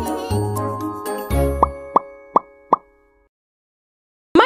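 Short children's intro jingle with deep bass notes, topped by four quick cartoon plop sound effects in a row, about a third of a second apart. The music then rings out and stops about three seconds in.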